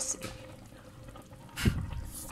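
A pot of chicken soup simmering faintly on the stove, with one loud knock near the end.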